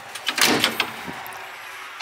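Diamond-plate side compartment door of a 1989 Pierce Javelin fire truck being shut, with a quick cluster of latch clicks and clatter about half a second in.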